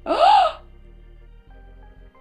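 A woman's sharp gasp of surprise, lasting about half a second, its pitch rising then falling. It is followed by soft background music.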